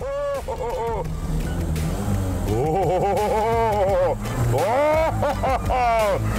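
A Lada 2105 car engine revving up and down repeatedly, with music under it.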